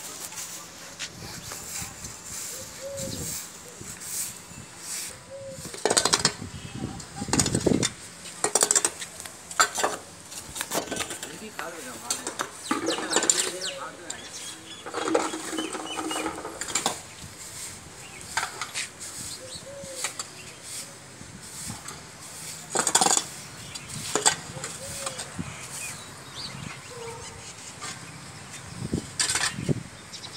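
Irregular scraping and sweeping on a dusty concrete floor: a broom brushing, a hoe scraping up dirt, and dirt being scooped up with clattering strokes, loudest a few times in bursts.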